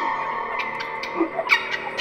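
Contemporary music for oboe and electronics: a held, hazy tone lingers while several sharp, short clicks sound one after another.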